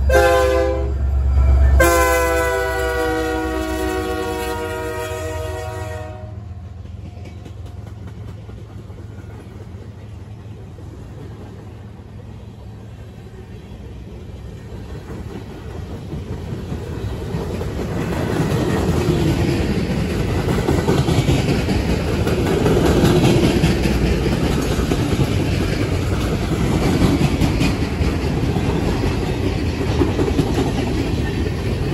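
Diesel-electric locomotive's air horn, a short blast then a longer one of about four seconds that sags slightly in pitch as the engine passes, over its low engine rumble. Then a long train of empty flatcars rolls by, wheels clattering over the rail joints, the clatter growing louder in the second half.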